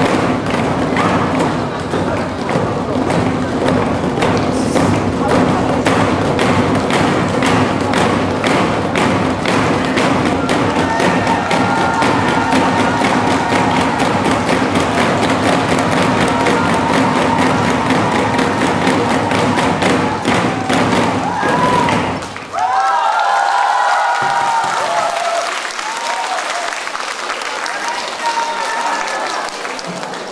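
Ensemble of nanta barrel drums struck with sticks in a fast, steady beat over a recorded backing track. The drumming stops suddenly about two-thirds of the way through, and voices and cheering follow.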